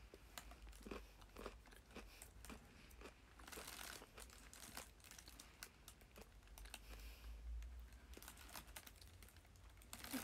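Faint chewing and crunching of a bitten-off piece of a moulded chocolate treat, with scattered light clicks and a low steady hum underneath.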